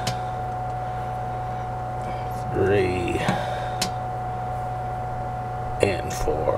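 A steady background hum with one short spoken word about midway. A few light metallic clicks sound as a nut driver turns the pressure switch's spring-loaded range nut.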